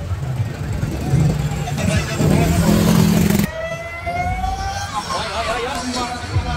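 Drag-racing motorcycle at full throttle rushing past, loudest between two and three and a half seconds in and cutting off suddenly; then a motorcycle engine note climbing in pitch as it accelerates, over crowd chatter.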